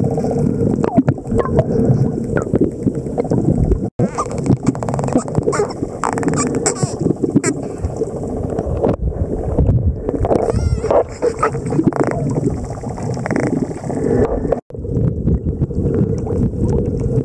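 Underwater sound among spinner dolphins: a steady muffled rush of water, over which run dolphin clicks and a few whistles, one wavering whistle near the middle.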